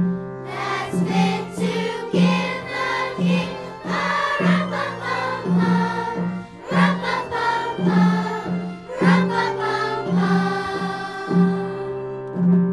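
A choir singing with instrumental accompaniment over repeated, steady low notes.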